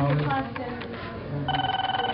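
Indistinct voices talking, with a telephone ringing in a fast trill from about one and a half seconds in.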